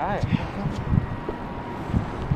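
Wind buffeting the phone's microphone: irregular low rumbling gusts.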